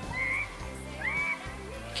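Neighbourhood children squealing, two high-pitched calls about a second apart that sound like chickens, with background music underneath.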